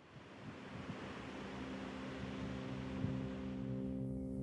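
Sea surf rushing, fading in and growing louder, with low held music notes coming in about a second and a half in.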